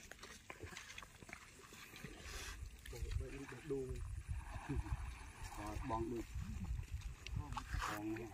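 People talking, low and indistinct, starting about three seconds in; before that only faint scattered clicks and rustling.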